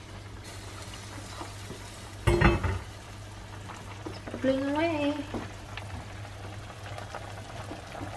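Kimchi jjigae bubbling at a simmer in an enamelled cast-iron pot. The heavy lid clanks down once with a brief ring about two seconds in, and near the end the stew is stirred with a ladle.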